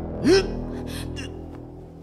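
A man's sharp pained cry, rising then falling in pitch, about a third of a second in, followed by a few short ragged gasps, over sustained background score music.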